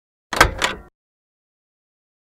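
A room door being moved by hand: one brief sound made of two quick knocks, less than a second long, about a third of a second in.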